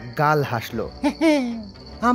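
A man's voice speaking in drawn-out, gliding tones, over a steady background of chirping crickets.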